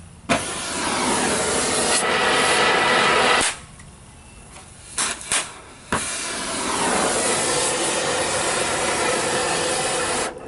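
Oxy-fuel cutting torch blasting through sheet steel: a loud, steady hiss for about three seconds. It drops away, gives three short bursts, then runs steadily again from about six seconds in.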